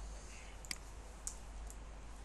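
Three sharp clicks of computer keyboard keys being pressed, roughly half a second apart, over a low steady electrical hum.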